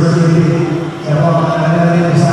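Live band music through a concert PA, with a voice holding long, drawn-out notes over it. It breaks off briefly about a second in.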